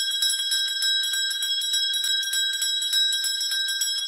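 Small bell ringing rapidly and without a break, a bright, high jingle made of a quick, even run of strikes.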